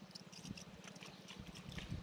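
Faint, rapid, steady low throbbing of a diesel irrigation pump engine running, driving water through the hose into the field furrows.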